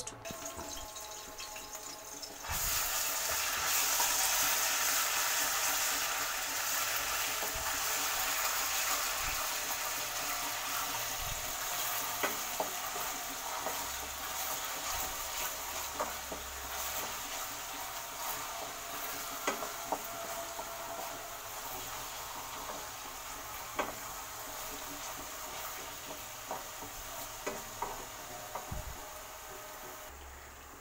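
Ginger-garlic paste hits hot oil in a kadhai and starts sizzling loudly a couple of seconds in, then keeps frying while a wooden spoon stirs it, with occasional clicks against the pan. The sizzle slowly dies down as the paste turns light brown.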